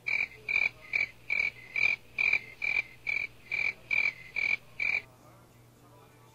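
A rapid run of twelve short, high-pitched chirps, evenly spaced at about two a second, that stops abruptly about five seconds in.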